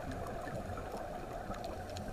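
Steady, muffled underwater noise picked up by a camera filming underwater, with faint, scattered crackling ticks above it.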